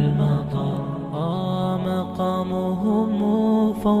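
An Arabic nasheed: a voice singing a wavering, ornamented melody over a steady held lower note.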